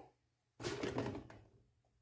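Handling noise: a small plastic tool being picked up and moved on a table, a short rustle and knock lasting about a second.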